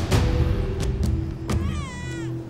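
Infant crying: a short, falling wail near the end, over background music, with a few short clicks.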